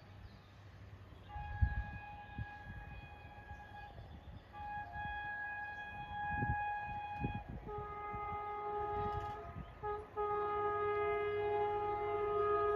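Horn of an approaching WAP7 electric locomotive sounding in several long, sustained blasts, with a deeper second tone joining about halfway through.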